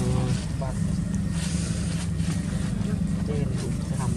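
A motor running steadily nearby, a low even drone.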